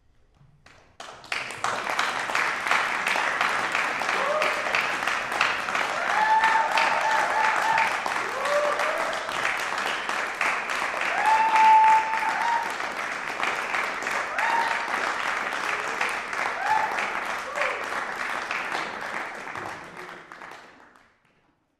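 An audience applauding, starting about a second in after a moment of silence, with several whoops and cheers through it. It dies away at the end.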